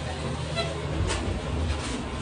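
Low engine and road rumble of a transit bus heard from inside the cabin, growing heavier about a second in as the bus moves off.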